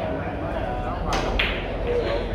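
Carom billiard balls clicking on a heated table: two sharp clicks about a second in, a third of a second apart, over a steady murmur of voices in a large hall.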